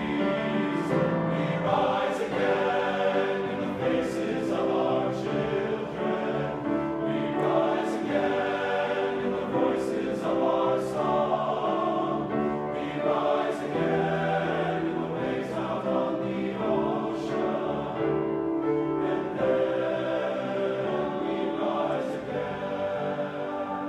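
Men's choir singing sustained chords in several parts.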